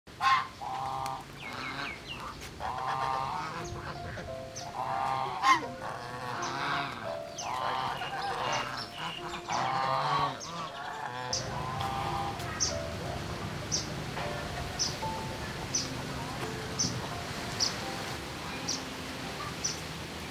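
Domestic geese honking, a run of repeated calls through the first half. After that, a steadier low background with short high chirps about once a second.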